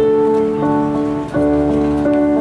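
Live pop-rock band playing an instrumental introduction: sustained melodic notes and chords that change every half second or so over guitar and bass.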